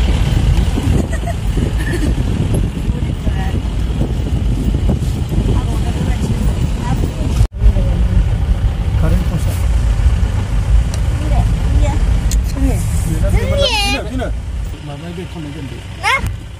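Low road and engine rumble of a car driving, heard from inside the cabin. It cuts out for an instant about halfway through and eases off near the end.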